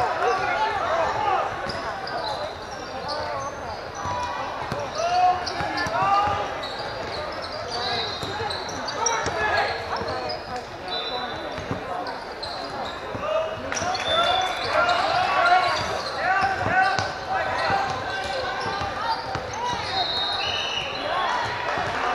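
Indoor basketball game sound: many overlapping voices of players and spectators calling out, a basketball bouncing on the hardwood floor, and several short high sneaker squeaks.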